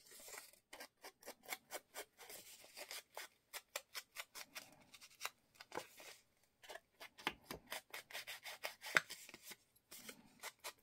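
Foam ink blending tool swiped and dabbed along the edges of a piece of paper: a quick run of short, faint scratchy strokes, several a second, with a sharper one near the end.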